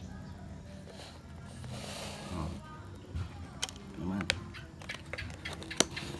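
Faint voices in the background over a low hum, with a few sharp clicks in the second half, the last one the loudest.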